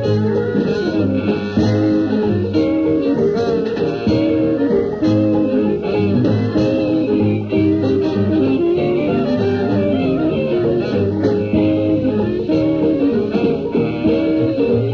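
A traditional Dixieland jazz band playing continuously.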